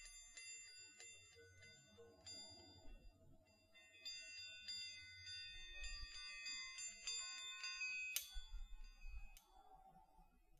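Chiming Baoding balls rolled in the hand, their inner sound plates giving many overlapping high ringing tones that start with light strikes and ring on. A sharp clack comes about eight seconds in, with a lighter one a second later, as the balls knock together.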